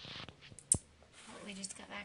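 A brief rustle, then a single sharp click a little under a second in, followed by a woman starting to speak.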